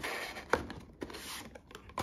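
Small cardboard box being pulled up out of a cardboard advent calendar tray: a soft rustle of card rubbing on card, with a single sharp tap about half a second in.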